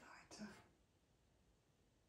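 A soft, brief murmur of a voice in the first half-second, too faint to make out as words, then near silence.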